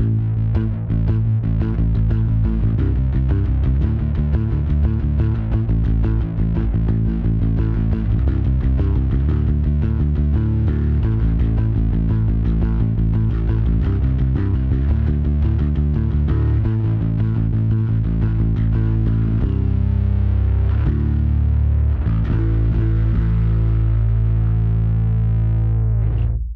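Electric bass played fingerstyle through the Bergantino Super Pre's drive section: thick, heavily distorted bass lines ('layers of filth'), recorded direct without an amp. A low-pass filter is engaged to roll off the top end like a speaker cabinet without a tweeter, so the distortion stays heavy without a fizzy, harsh top. The last notes ring out and fade at the end.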